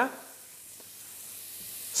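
Garlic sizzling in oil in a hot frying pan, a faint steady hiss.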